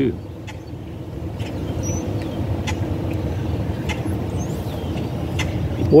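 Steady low rumble of a motor vehicle's engine close by, building about a second in and holding until near the end.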